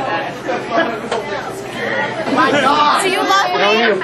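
Several people talking over one another in overlapping chatter, getting louder and busier about halfway through.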